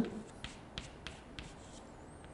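Chalk on a chalkboard as a formula is written: a string of faint, short taps and scratches, about half a dozen strokes.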